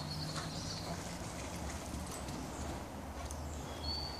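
Quiet outdoor background: a steady low rumble with a light hiss, a few faint clicks, and a brief thin high tone near the end.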